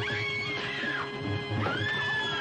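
A woman in a monster-movie soundtrack screaming twice, two long high cries that rise and fall, over dramatic film music with a held note and a low pulse.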